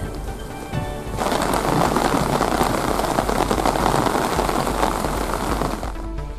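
Rain falling steadily, coming in as a dense, even hiss about a second in, with soft music underneath.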